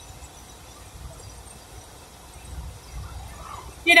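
Steady low rumble of road and engine noise inside a moving car's cabin, picked up by a phone's microphone. A voice starts right at the end.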